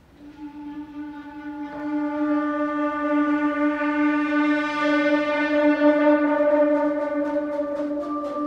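A concert wind band of brass and woodwinds opens a piece on one held unison note. Other instruments join within the first two seconds, and the sustained sound swells steadily louder. Light, regular ticking comes in near the end.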